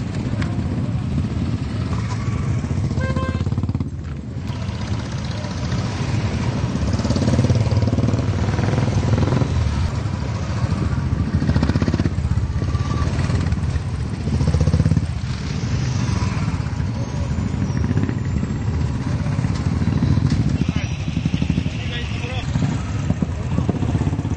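Several motorcycle engines running together as a group of riders pulls away and rides off in a column, with indistinct voices of people around.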